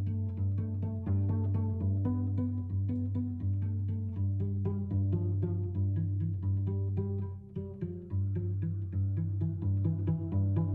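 Cello playing a quick run of short notes, partly plucked, over a steady low note beneath. The notes thin out briefly about three quarters of the way through.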